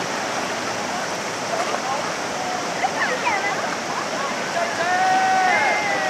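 Steady rushing of river water, with distant voices calling out over it and one drawn-out shout near the end.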